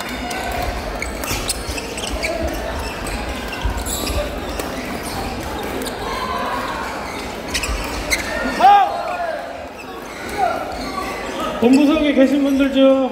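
Busy badminton hall: indistinct chatter of players and spectators echoing in a large room, with sharp taps of rackets striking shuttlecocks and scattered sneaker squeaks on the wooden floor, a few louder squeaks about two-thirds of the way in.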